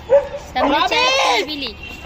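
A dog whining and yipping: a short call at the start, then about a second of high, wavering, rising-and-falling whines.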